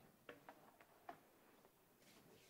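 Near silence broken by a few faint clicks and knocks, typical of a clip-on microphone being handled and fitted.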